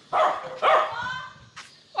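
A dog barking twice in quick succession, each bark short and loud.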